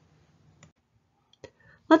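A quiet pause broken by a few short, faint clicks, then a woman's voice begins speaking near the end.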